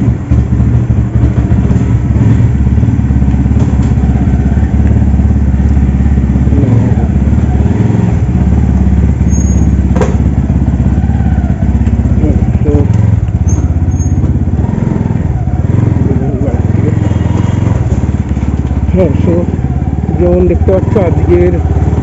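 Bajaj Pulsar NS200's single-cylinder engine running steadily just after starting, idling and then pulling away at low speed.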